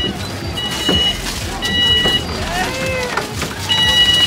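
Aluminium foil crinkling as wraps of food are unwrapped by hand, over a repeating electronic beep about half a second long, sounding roughly once a second.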